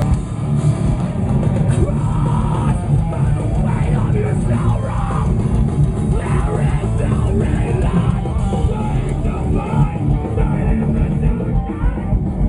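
Heavy metal band playing live and loud: distorted electric guitars over a driving drum kit, with a steady beat and no break.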